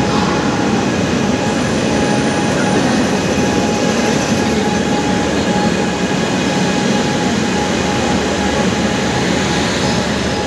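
Indian Railways WAG-9 electric locomotive passing close by, a loud steady rumble of wheels and running gear with a faint steady whine over it.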